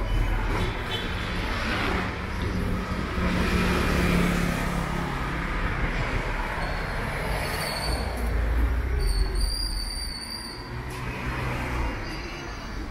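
City street traffic: cars and motor scooters passing close by, with engine rumble and tyre noise. A thin high squeal sounds for a few seconds about two-thirds of the way through.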